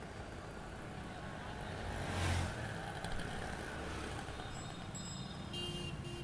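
Steady low background hum and hiss of an open-air setting, with a brief louder whoosh about two seconds in and faint high tones near the end.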